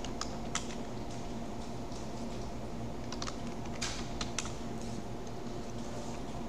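Computer keyboard being typed on: a few keystrokes near the start, a pause, then a quicker run of keystrokes from about three to four and a half seconds in, entering a login name and password. A steady low hum lies underneath.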